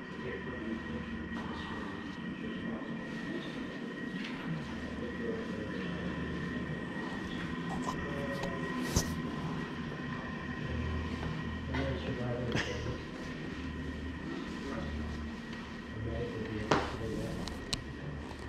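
Indoor hall ambience: a steady low rumble under a constant thin high hum, with indistinct voices in the background and a few sharp clicks.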